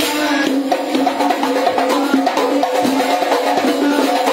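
Hadrah ensemble of hand-beaten rebana frame drums with rim jingles playing a fast, dense interlocking rhythm. Over it runs an amplified sung melody held in long notes.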